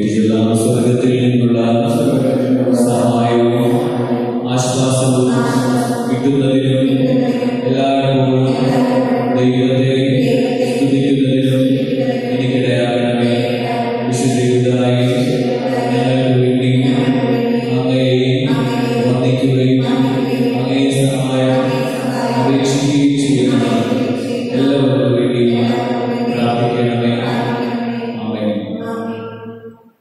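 Prayer chanted in a continuous, steady recitation tone by voice, with only a brief drop just before the end.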